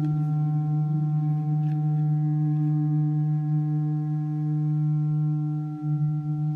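Audio feedback through a metal cistern, driven by an amplifier beneath it and picked up by a contact microphone on it: a steady low hum with several higher held tones above it, the metal's resonances. It dips briefly just before the end.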